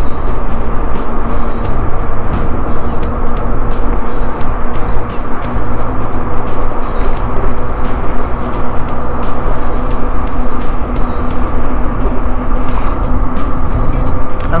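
Wind rushing over the microphone of a moving electric scooter, a loud, gusting rumble with a steady hum underneath and scattered clicks.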